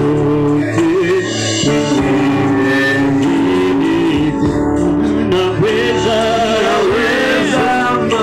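Loud gospel worship song: voices singing held, wavering notes over steady instrumental accompaniment.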